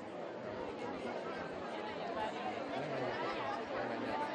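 Crowd chatter: many children and adults talking at once in a steady babble that grows slightly louder.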